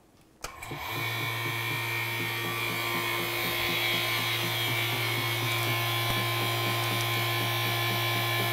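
Vacuum pump starting up about half a second in and then running steadily with a low hum and hiss as it pulls the chamber down to negative pressure.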